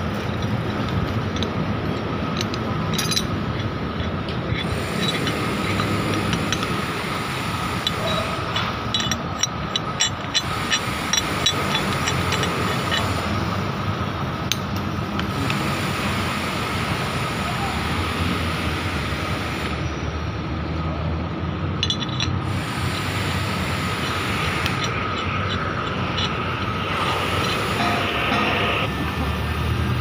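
Steady construction-site machinery noise with a constant whine running underneath, and a run of light metallic clinks about ten seconds in from steel shackles and rigging hardware being handled.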